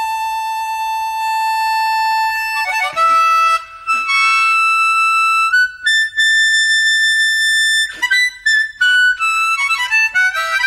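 Unaccompanied blues harmonica. It holds one long note for nearly three seconds, then plays runs of short notes with bent and sliding pitches, broken by brief gaps between phrases.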